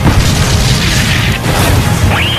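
Loud, distorted booming low end over music, with a hissing burst from about half a second to a second and a half in.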